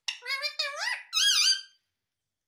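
Indian ringneck parrot vocalizing: a quick run of chattering, speech-like sounds, then a high, wavering squeak, stopping shortly before the end.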